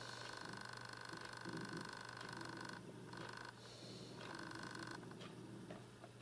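A person's wheezy breathing close to the microphone: a steady, faint whistling tone that breaks off twice, typical of congested bronchi.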